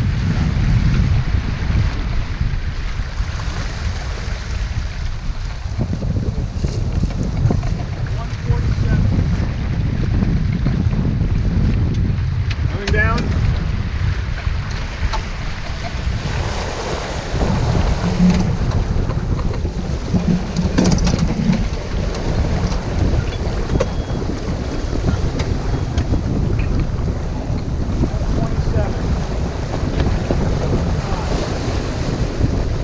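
Wind buffeting the microphone over the rush of water along the hull of a sailboat heeled and moving fast, with a brief knock about two-thirds of the way in.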